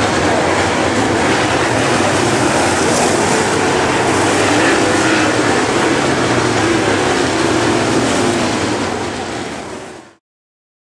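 A field of super late model dirt-track race cars running at speed on the track, a steady loud roar of many V8 engines, fading out near the end.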